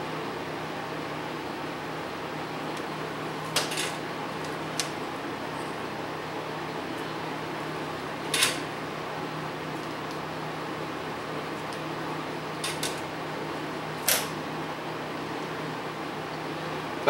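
A steady low hum in the background, broken by about five brief clicks and scrapes as two electrolytic capacitors are handled and soldered together at the bench.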